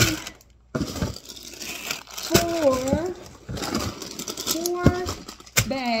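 Plastic-and-mesh bags of small potatoes crinkling as they are handled, with a few sharp knocks as they are set down on the counter, and a couple of short vocal sounds in between.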